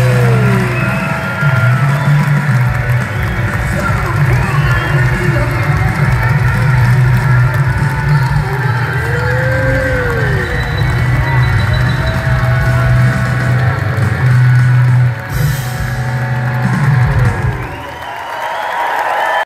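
Live rock band playing loud through a concert PA, with a heavy sustained bass and electric guitar, as the crowd cheers. The music dips briefly shortly before the end and falls away at the close.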